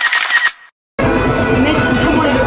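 Photo-sticker booth's camera shutter sound, a bright, finely ticking effect lasting about half a second as the photo is taken. The sound then cuts out completely for about half a second before background music comes back in.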